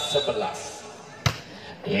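A volleyball struck once by hand for a serve: a single sharp smack a little past the middle. Commentary trails off just before it, with faint voices in the background.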